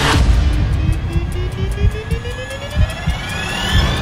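Trailer sound design: a whoosh at the start, then a tone that rises steadily in pitch throughout, over low rumbling music.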